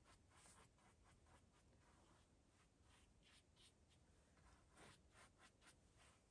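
Very faint, quick strokes of a mongoose-hair brush on a canvas, softening oil-paint foam patterns.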